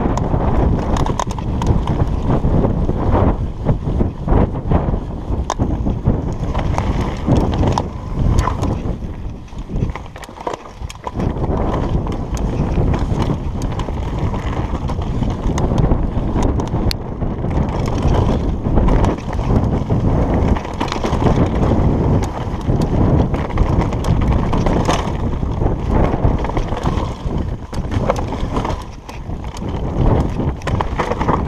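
Trek Slash 8 full-suspension mountain bike rolling down a rocky singletrack, its tyres, chain and frame rattling and knocking irregularly over stones, with wind buffeting the camera microphone. It goes briefly quieter about ten seconds in.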